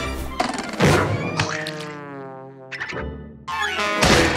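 Cartoon score with slapstick sound effects: a thunk and a boing early on, a gliding pitched run in the middle, then a loud thud near the end as the octopus lands head-first on the wet floor.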